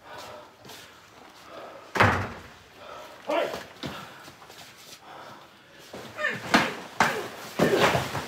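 A loud slam about two seconds in, then several more bangs and thumps near the end, with raised voices between them.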